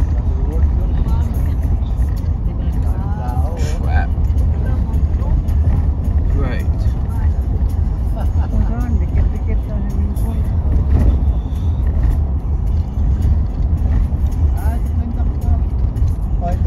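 Steady low rumble of a moving car's road and engine noise, with short bits of voices now and then.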